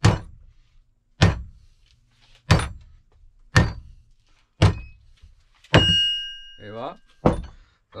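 Mallet striking the steel ring gear of a Ford Fiesta ST differential to drive it off the carrier: seven blows about a second apart. The sixth blow leaves a metallic ringing tone for about a second.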